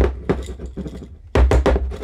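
Glass mason jar of dry egg noodles and powder being tapped on the counter and shaken to settle the powder down among the noodles: a knock at the start and a quick run of heavier knocks about one and a half seconds in, with the dry contents rattling in between.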